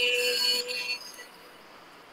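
The last held note of a recorded chanted mantra fades out about a second in, leaving only faint hiss.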